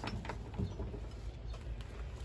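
Faint rustling and a couple of light clicks as piled items are handled and moved about.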